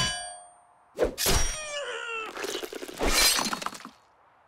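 Cartoon slapstick sound effects: a sharp hit with a short ringing tail, a second hit about a second in, a falling, wavering tone, then a loud crash that stops just before the end.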